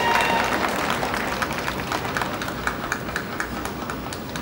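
Audience applauding a graduate, many hands clapping and slowly dying down, with a held whoop from the crowd ending just after the start.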